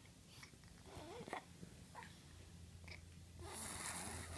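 A NoseFrida manual nasal aspirator in use: faint snuffling and short clicks as mouth suction draws through the tube at a baby's nostril, then a steady hiss of air through the aspirator near the end. It is clearing saline-loosened mucus from a congested, RSV-stricken seven-month-old's nose.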